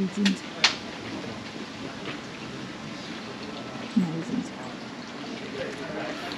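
A person's voice in two brief fragments, right at the start and about four seconds in, over a steady background hiss, with one sharp click just under a second in.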